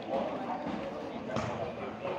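Indistinct chatter of many voices echoing in a gymnasium, with a single sharp knock about one and a half seconds in.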